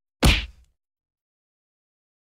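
A single whooshing impact hit used as a logo-reveal sound effect: a sharp strike whose pitch sweeps down and dies away within about half a second.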